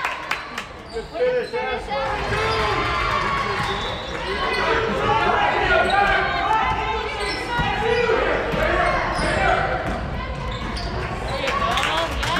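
A basketball bouncing on a hardwood gym floor during play, under voices of players and spectators calling out across the hall.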